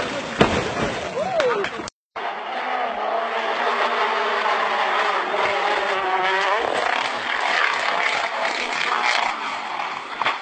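Rally car crashing: sharp impacts in the first two seconds. After a brief break, a rally car engine held at high revs while the car slides through loose gravel, its pitch rising sharply about two-thirds of the way through, then noisier gravel and tyre sounds with voices.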